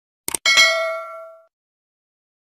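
Two quick click sound effects, then a single bright bell ding that rings out and fades within about a second: the notification-bell sound of a subscribe-button animation.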